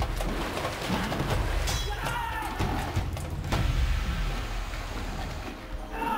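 Dramatic film score with fight sound effects laid over it: feet splashing through shallow water and a few sharp hits, the clearest about three and a half seconds in.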